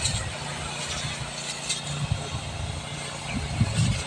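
High-pressure pole spray lance hissing steadily as it sprays a mist of pesticide and fertiliser into a durian tree's canopy, over a steady low hum of the spray pump's motor.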